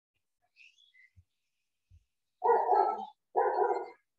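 A dog barking twice in quick succession a little past halfway through, each bark drawn out and loud.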